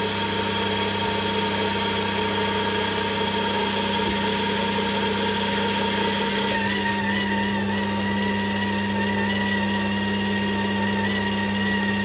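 Philips slow (masticating) juicer's motor running steadily while orange pieces are pressed through it. It gives a steady hum, and about halfway through its pitch shifts as a higher, slightly wavering whine joins in, as the load on the auger changes.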